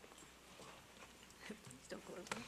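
Near silence: hall room tone with faint scattered clicks and taps, and a faint voice off the microphone near the end.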